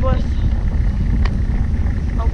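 Wind buffeting a GoPro's microphone while riding a recumbent trike, a loud, steady low rumble mixed with road noise, with one sharp tick a little past the middle.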